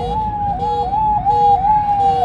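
Police car siren in fast yelp mode: one pitch that sweeps quickly up and slides back down, repeating about three times a second.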